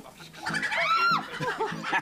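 A chicken cackling in the coop: one loud call about a second in that rises and then falls in pitch, followed by a few shorter, lower calls.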